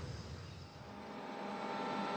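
Tractor and seeding rig running steadily and fading in, a steady whine over the engine noise.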